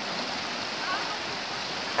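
Shallow floodwater rushing over a rocky stream bed: a steady, even rush of water.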